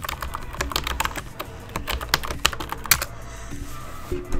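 Typing on a computer keyboard: a quick, irregular run of keystrokes that stops about three seconds in, with a few harder key presses just before it stops.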